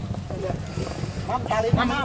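Men's voices talking and calling out close by, heard over a steady low rumble, with the voices coming in more strongly in the second half.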